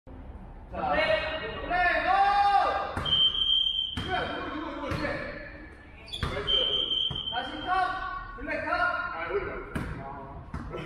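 Basketball bouncing on a wooden gym floor a few times, under the shouting of teenage players, with the hall's echo; two high steady squeals of about a second each sound around three and six seconds in.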